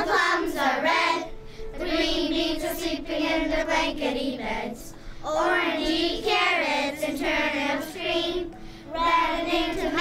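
Children singing a song in long, held notes, phrase after phrase with short breaths between.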